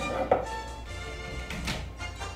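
Steady background music with a short thunk about a third of a second in and a softer knock near the end, from a hand handling an old-style desk telephone on a table.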